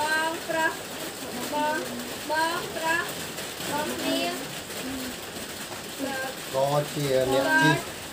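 Speech: a child's voice talking or reading aloud, with a deeper voice joining briefly near the end.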